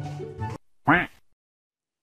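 Background music that cuts off about half a second in, followed by a single short, loud duck-like quack whose pitch rises and falls.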